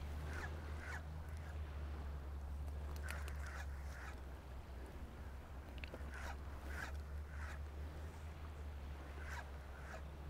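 Spinning reel being cranked to retrieve line, a faint raspy whirring that comes in short, uneven bursts with a few light clicks, over a steady low rumble of wind on the microphone.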